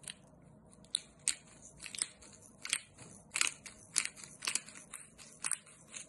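Hand-turned pepper mill grinding peppercorns, a run of short grinding strokes about two a second.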